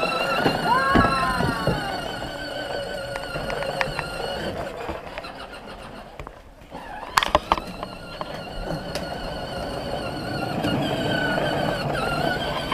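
Battery-powered John Deere ride-on toy tractor driving, its electric motor and gearbox giving a steady, wavering whine. The whine fades out for a couple of seconds about halfway through, then a few sharp knocks come as it picks up again.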